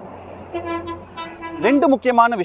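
A vehicle horn sounding one steady note for about a second, with a man's voice over and after it.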